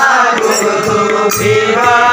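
Devotional folk music: a harmonium holding reedy chords under a chanted vocal line, with low hand-drum strokes and small brass hand cymbals (gini) keeping the beat.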